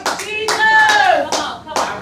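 Hand clapping in a quick, steady beat, with a voice calling out over it about half a second in.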